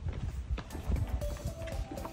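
Footsteps on a park path at a walking pace, with background music coming in about a second in.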